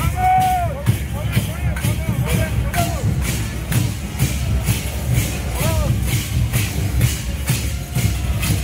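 Parade band music with a steady, even beat of about two strikes a second over a heavy low end. Dancers' voices call out over it, loudest just after the start and again about six seconds in.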